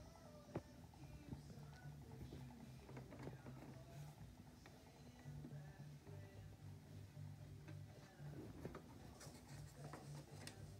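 Near silence with a faint steady low hum from the motorised rotating display stand, and a few soft clicks.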